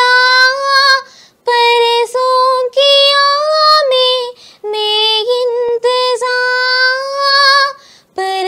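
A girl singing solo and unaccompanied, holding long notes in three phrases with short breaths between them.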